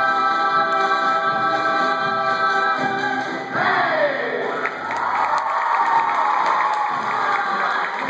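A stage-musical ensemble of voices singing one long held chord, which cuts off about three and a half seconds in. The audience then cheers and applauds.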